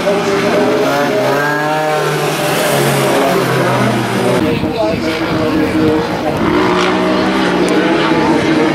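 Several rallycross car engines racing on a gravel track, their pitch rising and falling as the drivers rev through the corners and change gear.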